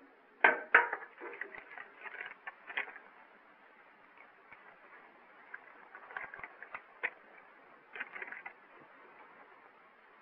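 Light handling noises of a paper note being picked up and unfolded: two sharper clicks about half a second in, then scattered soft rustles and ticks, over the steady hiss of an old film soundtrack.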